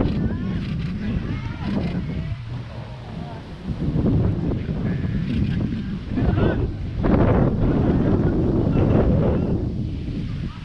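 Wind buffeting the microphone in uneven gusts, strongest about four seconds in and again near the end, with faint distant voices calling out now and then.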